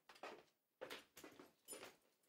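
Near silence: room tone with a few faint, soft movement sounds, about a second in and again near the end.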